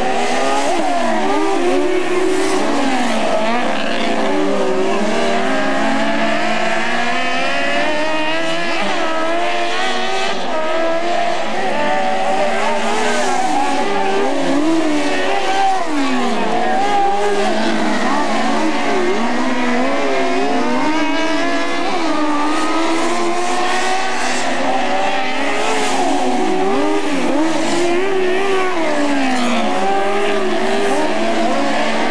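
Several open-wheel dirt-track race cars running hard around the oval. Their engines overlap and rise and fall in pitch as they go into the turns and come back on the throttle.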